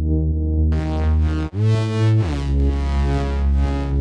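Electronic track playing: sustained synthesizer chords over a deep bass, sidechain-compressed so they pulse in rhythm with the drums. About a second and a half in, the sound cuts out for an instant and moves to a new chord.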